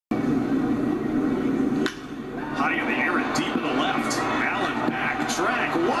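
A single sharp crack about two seconds in, the bat hitting the pitch for a two-run home run, followed by the play-by-play announcer's voice calling the ball's flight.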